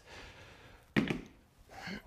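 A phone snapping onto a Peak Design magnetic wall mount on a tiled wall: one sharp click about a second in, with a short ringing tail.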